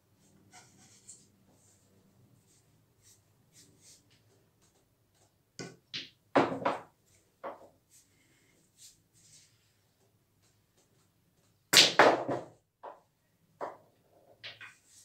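Two shots on a mini pool table: the cue tip striking the cue ball, balls clacking together and knocking into the pockets, a quick cluster of sharp clicks each time. The first comes just before halfway through, the second, the loudest, near the end, each followed by a couple of lighter knocks.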